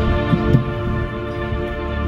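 Instrumental backing track played over stage speakers: sustained synthesizer chords over a low, throbbing bass.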